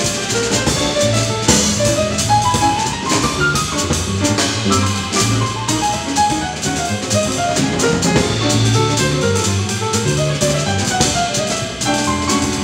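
Small jazz group playing: a grand piano plays quick running lines over upright bass and a drum kit with steadily ringing cymbals.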